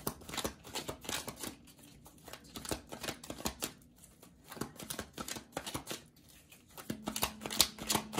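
A deck of tarot cards being shuffled by hand: a long run of quick, uneven clicks and taps of card on card, loudest near the end.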